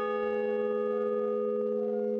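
A large hanging bell ringing on after a single strike, holding a steady chord of several tones.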